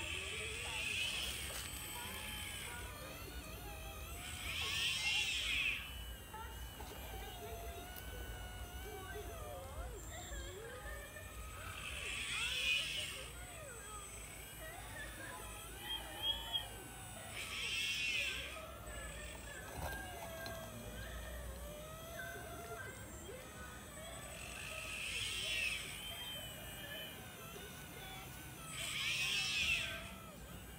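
Remote-control excavator's small electric motors whining in short bursts, about six times, each about a second long, as the boom and bucket move through the dirt.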